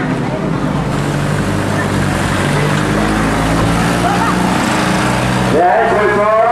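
A vehicle engine running steadily at low revs, with people's voices in the background. Near the end the sound changes suddenly to loud, wavering voices.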